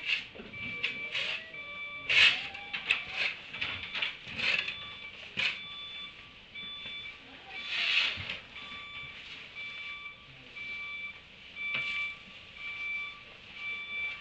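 A vehicle's reversing alarm beeping steadily about once a second, starting about three seconds in, with brief louder bursts of scratchy noise in between, the loudest about two seconds in and again at eight seconds.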